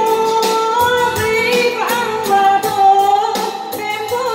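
Live woman's singing through a microphone, holding long notes, over electronic keyboard accompaniment with a steady programmed beat.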